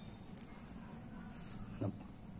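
Faint, steady, high-pitched insect trilling in the background, with a brief vocal sound near the end.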